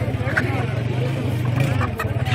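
Background chatter of many voices in a busy market, over a steady low rumble.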